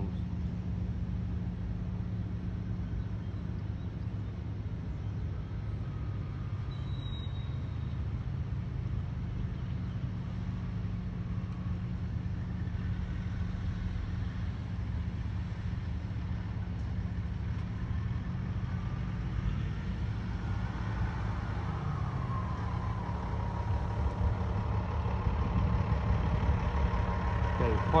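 Diesel engine of a semi truck hauling a grain hopper trailer, running steadily as it drives up, growing louder over the last several seconds as it comes close, with a faint whine that rises and levels off about two-thirds of the way through.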